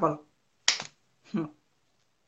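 A single sharp click about two thirds of a second in, between brief fragments of a woman's voice.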